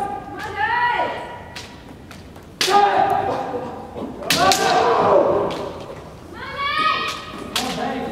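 Kendo kiai: long, held shouts from the fighters, with three sharp cracks of bamboo shinai strikes and stamping feet on a wooden floor, each crack followed by a shout.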